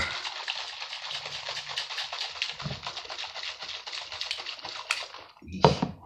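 Plastic shaker bottle of mixed pre-workout drink shaken hard, the liquid sloshing in a rapid, steady rattle for about five seconds and stopping shortly before the end.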